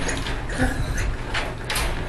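A Great Dane's teeth working the metal door latch of a wire dog crate: the door and latch rattle and click several times, in short metallic bursts.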